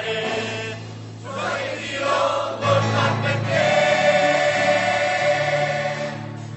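Mixed choir singing a gospel song. It dips briefly about a second in, then rises into a long, held chord over steady low accompaniment.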